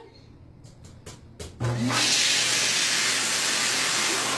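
Tankless public-restroom toilet flushing: after a few light clicks, a sudden loud rushing whoosh sets in about a second and a half in and runs for nearly three seconds before dropping back to a quieter rush.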